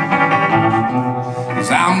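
Hollow-body Godin guitar strumming chords between sung lines of a country song, with the singer's voice coming back in near the end.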